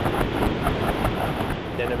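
Rushing water of a large breaking wave under a surfboard, with heavy wind buffeting the camera's microphone: a dense, even noise, strongest low down, that cuts in suddenly.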